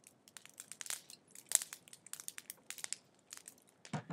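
Irregular sharp crackling and crinkling clicks, the loudest about one and a half seconds in.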